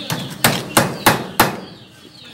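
Claw hammer striking a joint in a wooden pole frame: five sharp strikes about three a second, the first lighter, with the blows dying away near the end.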